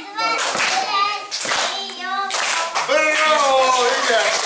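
Clapping from a small audience, with a child's high voice over it.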